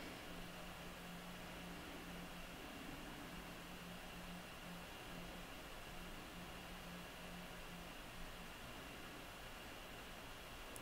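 Faint steady hiss with a low, on-and-off hum: background room tone, with no distinct sound event.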